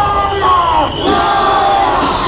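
A crowd of marchers shouting protest slogans in unison: two long, drawn-out calls that fall in pitch at the end, the first ending about a second in and the next following at once.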